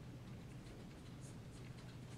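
Faint scratching of a felt-tip marker drawing on a paper easel pad, in short strokes over a low steady room hum.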